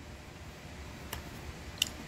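Two light clicks in the second half from a folding wireless charger stand being adjusted by hand as its small support tab is pulled out and set, over low room noise.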